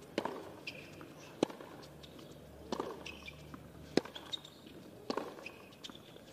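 Baseline rally on a hard tennis court: a tennis ball struck crisply by rackets five times, about every second and a quarter, with short high shoe squeaks on the court surface between the hits.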